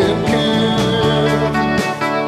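Live rock band playing: electric guitars and bass over a steady drum beat, with one long wavering held note.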